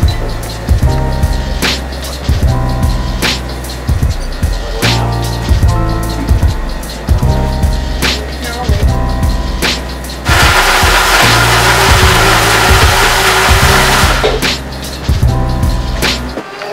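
Background music with a steady beat. About ten seconds in, a countertop blender runs loudly for about four seconds, blending a drink and drowning out the music, then stops.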